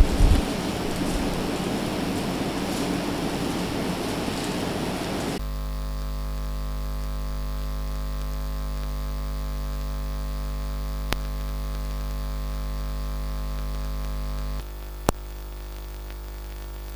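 A few low thumps at the start, then a few seconds of hissing room noise. After about five seconds a steady electrical mains hum with a stack of overtones takes over, broken by two sharp clicks, and it drops a little in level shortly before the second click.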